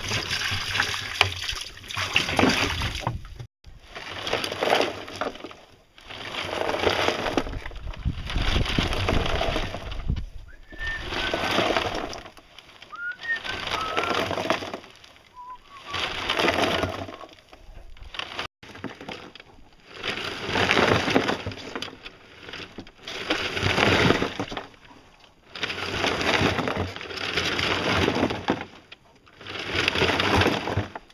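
Wet concrete mix with gravel sloshing and grinding inside a hand-rocked plastic barrel mixer, a surge about every two seconds as the drum is tipped back and forth.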